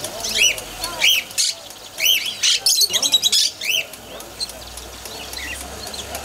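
Caged budgerigars and other small pet parrots calling, a quick run of loud, repeated chirps and squawks over the first four seconds that then thins to a few fainter calls.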